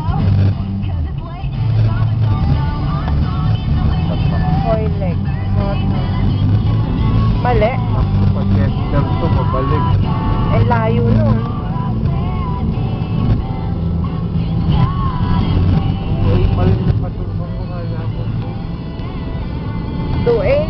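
Steady low rumble of a car's engine and tyres heard from inside the cabin while driving. A voice or music plays over it, rising and falling in pitch.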